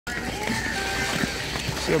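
Busy outdoor ice-rink ambience: many distant voices blend with the steady scrape of skate blades on the ice.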